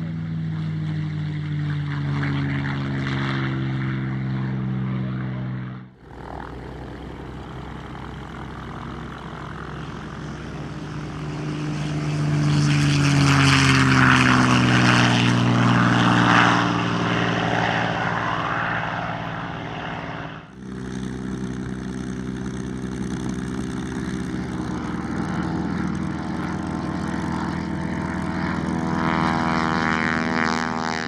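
Packard-built Merlin V-12 engines of P-51 Mustangs in three takes. In the first, one runs at takeoff power on its roll, its pitch falling as it passes. In the middle take, one lifts off at full power, loudest and falling in pitch as it goes by. In the last, after the second cut, one taxis at low power.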